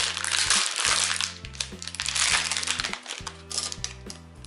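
Plastic packaging bag crinkling in bursts as it is handled and a tofu tray is pulled out of it, over background music with a steady bass line.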